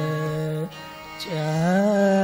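Male khayal singer in raag Bageshri holding a sustained note, breaking off briefly, then gliding smoothly up into a higher held note, over a steady drone with instrumental accompaniment.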